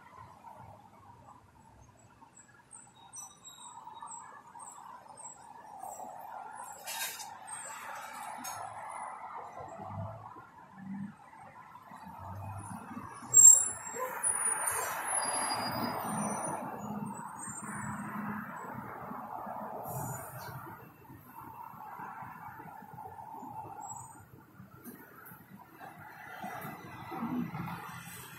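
Cabin noise inside a Trolza-62052.02 trolleybus as it creeps forward to a red light: a low running hum, with a cluster of high chirping squeaks and a sharp clack about halfway through, the loudest moment.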